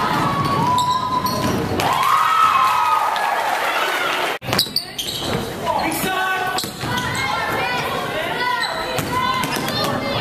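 Live basketball game sound in a large gym: a basketball bouncing on the hardwood floor amid shouting from players and spectators, echoing through the hall. The sound breaks off briefly about four seconds in.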